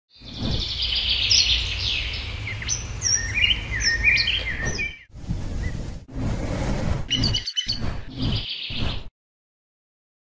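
Birds singing and chirping, a high trill at first and then quick stepped chirps, over a low rumble. It is several short recordings cut together with abrupt breaks, and it cuts off about nine seconds in.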